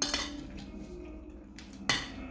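Metal spoon and fork clinking and scraping on a plate while eating: a sharp clink with a short ring at the start, and a louder sharp clink near the end.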